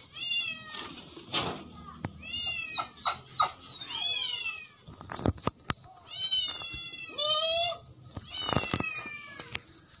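Dog whining, a series of high, falling cries, with a few sharp clicks about halfway through.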